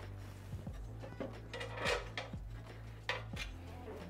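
A few light clicks and short metal scrapes as the side screws on the aluminum rails of a DJ booth are loosened by hand, over quiet background music.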